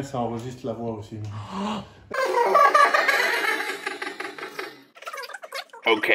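People talking, with some laughter.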